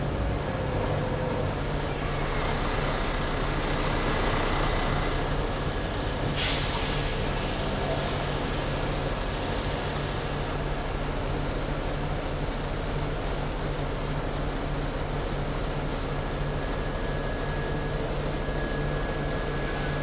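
Inside a city bus under way: its engine and road noise as a steady low hum, with one short burst of hiss about six seconds in.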